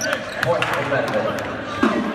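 Voices talking in a large, echoing volleyball arena, with scattered short knocks and thuds of gym activity.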